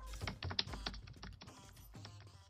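Computer keyboard typing sound effect: a rapid, uneven run of key clicks that grows fainter toward the end, set to text being typed out on screen.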